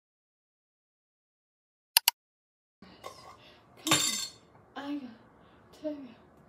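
Dead silence broken by two sharp clicks about two seconds in. Room sound then returns, with a glass jar clinking against a stone countertop about four seconds in, followed by a couple of short hummed vocal sounds.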